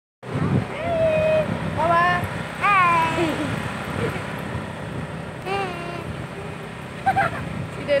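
High voices speaking and calling out in short gliding phrases, over a steady low background rumble.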